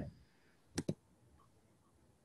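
Two sharp clicks in quick succession, about a tenth of a second apart, a little under a second in.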